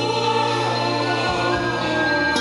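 Live music from a band with a choir of backing singers, sustaining long, held chords with no words.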